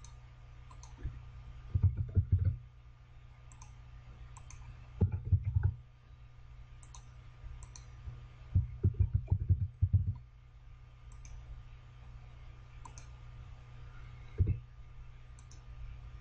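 Computer keyboard typing in short bursts of keystrokes, mixed with mouse clicks, as words are entered one at a time; a steady low hum sits under it.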